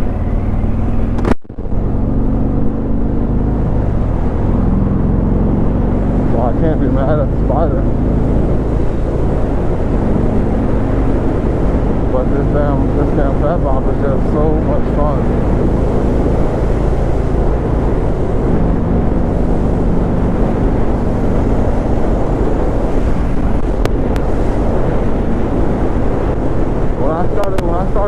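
Harley-Davidson Fat Bob's Milwaukee-Eight 107 V-twin running steadily at highway cruising speed, with wind noise on the microphone. The sound drops out briefly about a second in.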